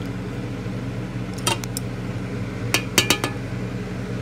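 Metal clinks against a stainless steel pot while lead slag is being separated out. There is one clink about a second and a half in, then a quick run of three or four ringing clinks near the three-second mark, over a steady low hum.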